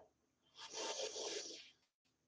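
A woman's slow breath drawn in through the nose, one soft hiss of a little over a second starting about half a second in.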